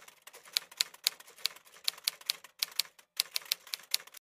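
Typewriter key clacks used as a sound effect: an irregular run of sharp clicks, about three to four a second, with two short pauses in the second half.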